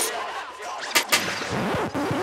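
Breakdown of a drum and bass track: the beat cuts out suddenly, leaving sparse shot-like sound effects, with two sharp cracks about a second in followed by quick falling pitch sweeps.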